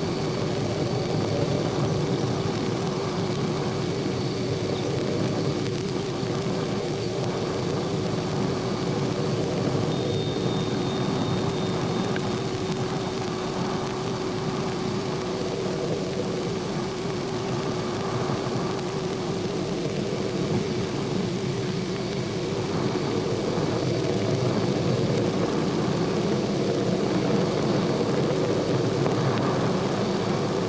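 Steady rumbling drone of a rocket missile in flight, with a faint wavering hum running through it, heard on an old film soundtrack.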